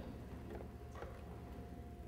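Faint footsteps on a wooden stage floor: two light clicks about half a second apart over a low hum, with a faint steady tone coming in near the end.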